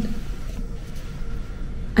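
Room tone in a pause between words: a steady low rumble with a faint steady hum.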